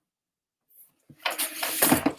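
Papers being handled and rustled close to the microphone. The noise starts about halfway through after a second of silence and grows louder toward the end.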